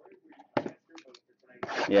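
A few brief crinkles and clicks from a trading-card hobby box and its plastic shrink-wrap being handled, with the loudest about half a second in. A man starts speaking near the end.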